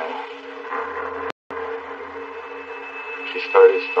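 A man's voice on a low-quality recording, like a phone or tape line, over a steady hum, mostly pausing between words and speaking again near the end. The sound cuts out completely for a split second a little over a second in.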